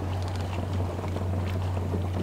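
Fishing boat's motor running steadily at slow scanning speed: a constant low hum with a haze of water and wind noise.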